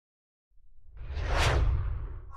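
Whoosh sound effect with a low rumble under a logo animation. It starts about half a second in, swells to a peak near the middle and then fades.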